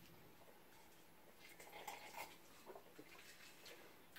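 Near silence in a small room, with a few faint, soft sounds in the middle as two people sip cocktails from glasses.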